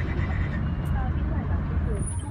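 Steady low rumble of a taxi driving through city streets, engine and road noise heard from inside the cabin, with faint voices in the background.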